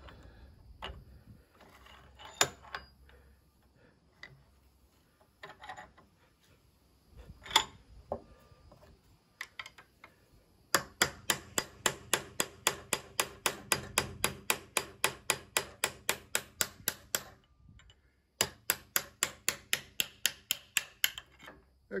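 Hammer blows on a steel rod driving the stuck remains of an old wooden handle out of a throwing-axe head clamped in a bench vise. A few scattered knocks, then, about ten seconds in, a fast steady run of sharp strikes at about four or five a second for some six seconds. After a brief pause comes a second run that stops shortly before the end.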